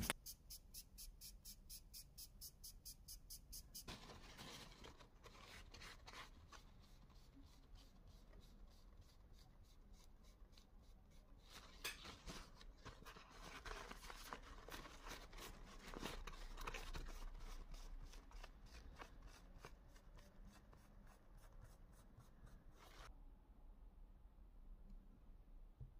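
Faint, quick, regular scraping of a metal rod worked inside a small metal engine cylinder, grinding its inner surface smooth. Later comes a soft rubbing and rustling of a paper towel wiping the parts.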